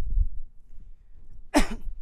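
A man's single short, explosive vocal burst about one and a half seconds in, a quick laugh-like huff with a falling pitch. A dull low thump comes right at the start.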